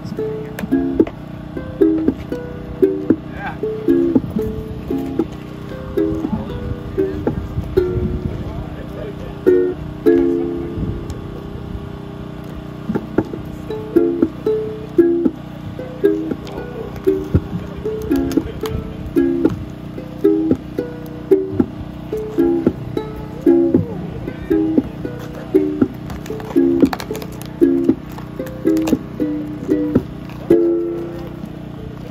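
Electric guitars played through amplifiers: a slow, repeating figure of plucked single notes without drums.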